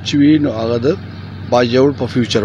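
A man speaking in two short phrases, over a steady low hum.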